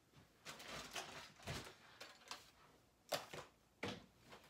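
Rummaging sounds of objects being moved about in a search for crayons: a stretch of soft shuffling and rustling, then two sharp knocks near the end.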